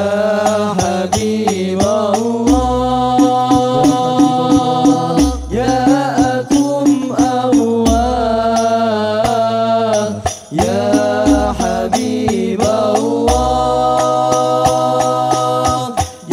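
Group of male voices singing an Arabic sholawat in unison, long held and ornamented lines, over a steady beat of hadrah al-Banjari rebana frame drums.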